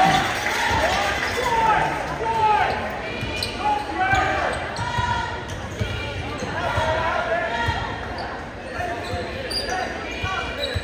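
Basketball being dribbled on a hardwood gym floor, a run of low thumps, under the voices of spectators and players in the gym.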